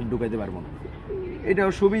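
Domestic pigeons cooing in their wire loft cages, with a man's voice coming in near the end.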